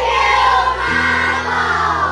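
A crowd of children shouting a thank-you together in unison over soft background music, the shout tapering off near the end.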